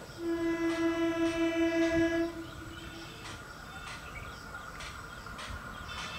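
Indian Railways EMU local train sounding its horn in one blast of about two seconds, a single steady tone. After the horn comes the steady running noise of the train approaching on the track.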